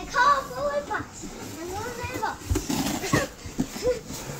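Young children's voices squealing and babbling as they play, with a low thump about halfway through.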